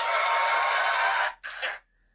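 Studio audience applause, steady and even, cut off abruptly a little over a second in.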